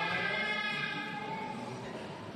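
Church congregation singing together, holding a sustained sung phrase that eases off slightly near the end.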